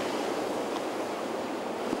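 Choppy sea surf: a steady rushing wash of breaking waves.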